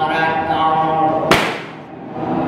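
Voices chanting, broken about 1.3 seconds in by a single sharp crack that dies away over about half a second, after which the chanting pauses.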